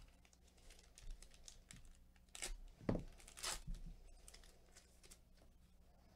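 A Panini Prizm basketball card pack being torn open by hand: a few short, sharp rips and crackles of the wrapper about two and a half to four seconds in, with lighter rustling of the wrapper and cards around them.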